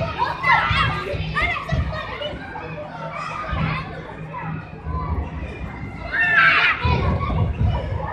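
Many children playing and calling out together in a large indoor play hall, their voices overlapping, with a louder burst of high shouting about six seconds in.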